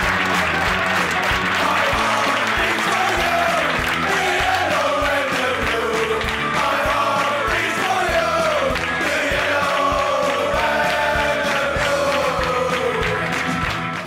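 A group of men singing a team chant together in a dressing room, with clapping and music with a steady beat underneath.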